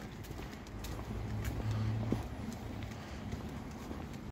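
Alaskan Malamute's claws clicking on a paved sidewalk during a leashed walk, scattered light ticks, with a faint low hum behind them for the first two seconds.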